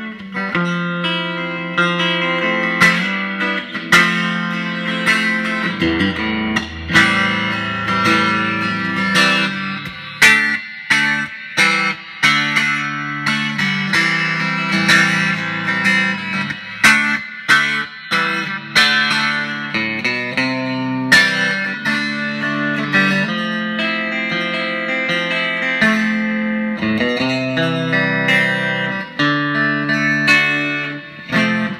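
A 1965 Fender Stratocaster electric guitar played through an amplifier. The continuous run of picked single notes and chords has a sharp attack on each pick stroke and notes ringing on between them.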